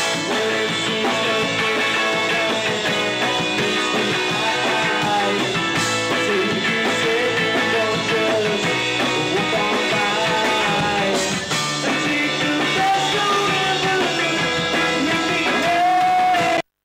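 Live rock band playing: a man singing over electric guitar, bass guitar and drums.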